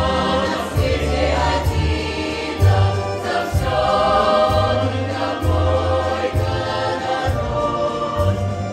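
Mixed folk choir of women's and men's voices singing a Belarusian song in several-part harmony, over a low bass accompaniment that changes note about once a second.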